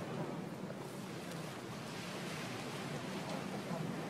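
Steady wash of water against shoreline rocks, an even hiss with no distinct knocks.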